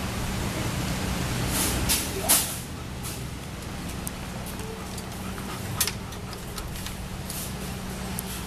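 Outdoor background noise: a steady low hum under a faint hiss, with a short, loud hissing burst about two seconds in and a sharp click near six seconds.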